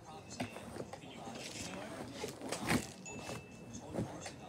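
Indistinct voices in the background, with one brief loud noise about two and a half seconds in.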